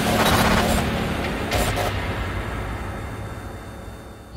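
Logo-intro sound effect: a dense crackling, rumbling noise with a few short glitchy bursts in the first two seconds, fading steadily away.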